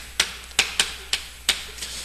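Chalk writing on a chalkboard: a run of about six sharp, irregular taps as each stroke hits the board.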